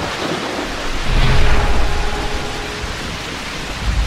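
Rain and thunder sound effect: a steady hiss of heavy rain, with a low rolling rumble of thunder swelling about a second in and fading again.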